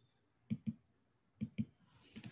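Stylus tapping on a tablet's glass screen during handwriting: four light, sharp clicks in two quick pairs, the pairs about a second apart.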